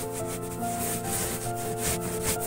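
Cardboard box scraping and rubbing against sandy soil as it is pushed down into a hole, in a string of short scratchy strokes.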